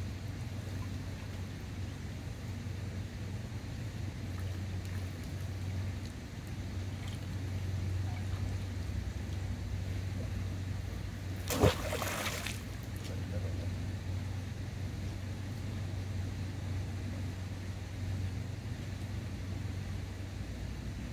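Steady low hum with faint outdoor background noise. A short, loud noise about halfway through.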